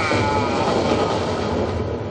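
Stage storm sound effect: a loud, steady rush of thunder-and-wind noise, with the echo of a man's shouted theatrical line dying away at the start.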